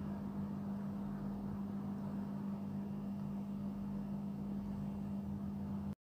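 Steady low hum with faint hiss: the recording's background noise during a pause in the narration. It cuts off abruptly to silence just before the end.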